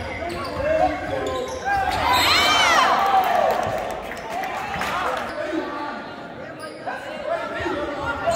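Basketball game sounds echoing in a gymnasium: a ball bouncing on the hardwood court amid the general noise of play. A loud voice calls out about two and a half seconds in.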